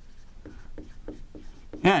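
Dry-erase marker writing on a whiteboard: a quick run of short strokes as symbols are drawn. A man's voice starts a word near the end.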